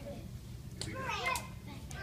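Young children's voices, faint and chattering, with a few light clicks.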